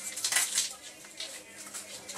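Border Collie nosing and stepping through torn cardboard and paper scraps, the pieces crinkling and rustling in quick, irregular crackles.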